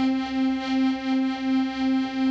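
Hohner piano accordion holding a single note, its loudness swelling and fading about twice a second as the instrument is rocked: bellows vibrato, the loosely held bellows pulsing with the player's movement.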